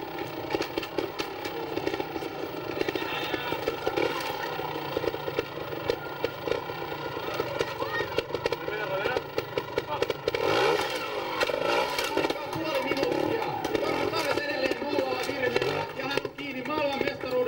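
Two-stroke trials motorcycle engine running at low revs, with short bursts of throttle as the bike is balanced and hopped over rocks, over people talking.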